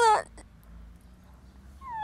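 A boy crying: a high wail falls in pitch and breaks off just after the start, and after a quiet gap of about a second and a half a second wail begins near the end.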